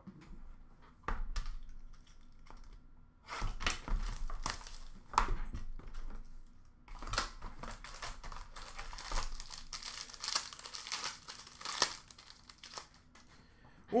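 Plastic wrapping on a box of hockey trading cards crinkling and tearing as it is ripped open by hand, after a few light knocks of cardboard boxes being set down. The crackling is busiest through the middle and thins out near the end.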